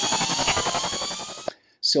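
Electronic glitch sound effect for an animated logo: a dense buzzing rattle with tones sweeping upward, cutting off suddenly about one and a half seconds in.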